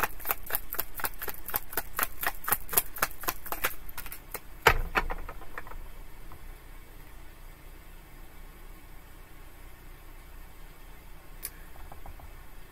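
Tarot deck being shuffled by hand: a quick run of card clicks, about five a second, for about four seconds. Then a single thump, a few softer clicks, and quiet room tone.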